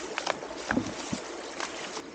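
Stones and gravel knocking and scraping as gloved hands dig through a creek bed, a handful of short clacks over the steady sound of running stream water.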